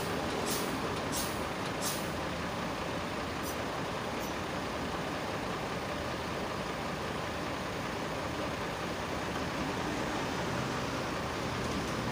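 Light knife strokes on a cutting board, about two-thirds of a second apart, in the first two seconds, with two fainter ones a little later. Under them is a steady background of vehicle noise.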